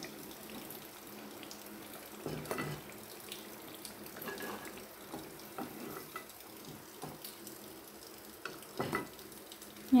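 Masala vadas deep-frying in hot oil: a quiet, steady sizzle. A metal slotted skimmer scrapes and clinks a few times against the pan as the fried vadas are lifted out.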